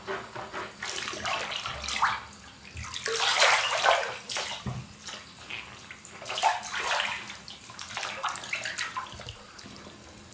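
Bathwater sloshing and splashing as booted feet are moved through a filled bathtub, in uneven surges, with the biggest splashes about three to four seconds in and again around seven seconds.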